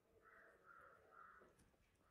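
Near silence, with a crow cawing faintly three times in quick succession.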